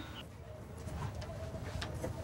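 A dove cooing faintly with low, steady notes over quiet outdoor background, with a small click near the end.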